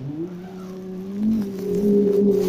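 Male voices chanting a synagogue prayer melody in long, steady held notes, stepping up in pitch about a second in.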